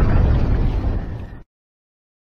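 The tail of an explosion sound effect: a loud, low rumble that fades and cuts off suddenly about a second and a half in.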